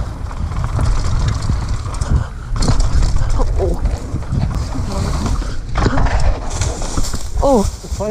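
Mountain bike rolling fast down a dirt forest trail: wind buffeting the camera's microphone over tyre and trail rumble. Brief voice sounds break through, with a loud call from a rider near the end.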